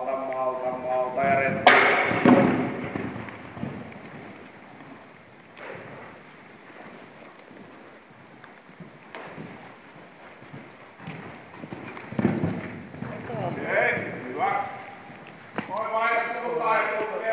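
A horse cantering on the sand footing of an indoor riding arena, its hoofbeats muffled, with a person speaking at the start and again near the end. A loud thump about two seconds in.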